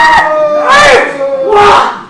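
Kendo kiai: several fencers shouting long, drawn-out cries at once, their pitches sliding up and down, fading out near the end.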